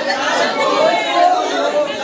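Dense crowd chatter: many people talking and calling over one another at once, with no single voice standing out.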